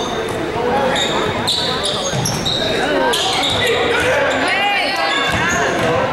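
A basketball bouncing on a hardwood gym floor, with sneakers squeaking in short high chirps, busiest from about three to five seconds in, over spectators talking and calling out.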